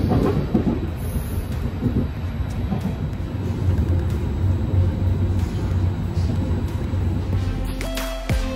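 Passenger train running, heard from inside the carriage as an uneven low rumble.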